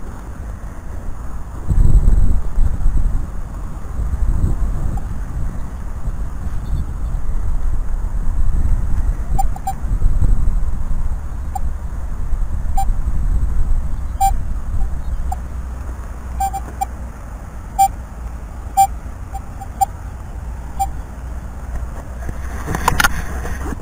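Minelab Equinox 800 metal detector giving a string of short, same-pitched beeps from about nine seconds in as its coil is swept over the ground, over a low wind rumble on the microphone.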